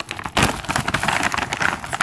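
Plastic dog-treat bag crinkling and rustling as a hand rummages inside it for treats: a run of quick crackles with a louder burst about half a second in.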